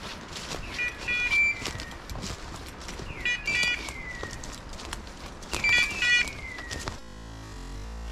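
Hunting dog's beeper collar sounding a repeating electronic call about every two and a half seconds: a short run of stepped beeps and a falling screech. Footsteps crunch on dry leaves and twigs throughout.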